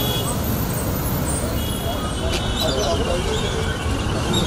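Road traffic noise: a steady rumble of vehicles on a busy street, with a bus passing close by.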